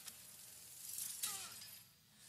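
Crash and shatter sound effects from an animated film's soundtrack, played on a TV and heard across a small room, with a sharp hit a little past halfway, a short falling tone after it, then dying away near the end.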